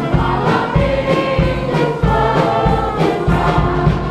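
Gospel music: a church choir singing over loud instrumental accompaniment with a heavy, pulsing bass.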